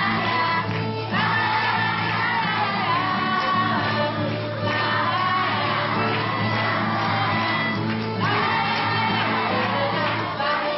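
Live acoustic music: acoustic guitars and a violin playing with a group of children's voices singing along.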